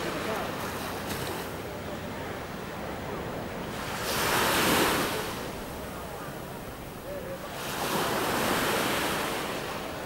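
Sea waves washing in, with wind. Two bigger waves swell and fade, about four and eight seconds in.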